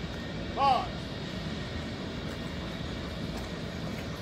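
One short shouted drill command about half a second in, followed by a steady low outdoor rumble.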